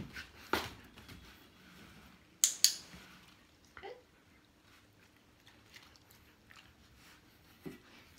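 A dog-training clicker clicks sharply twice in quick succession, a press and release marking the moment the dog does the wanted thing with the box. Around it are faint rustles and taps of the dog's paws on the cardboard box and of it taking a treat.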